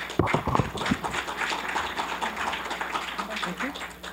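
Small seated audience applauding, dense clapping that stops near the end.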